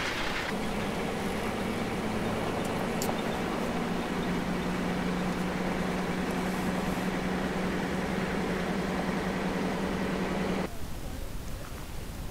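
Toyota Land Cruiser 60 Series driving on a dirt track, heard from inside the cabin: a steady engine drone with tyre and road noise that drops slightly in pitch about four seconds in. It cuts off abruptly near the end.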